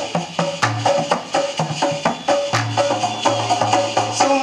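Instrumental passage of live dikir barat music: busy hand-percussion strikes several times a second over a bass line and a held melody, with no singing.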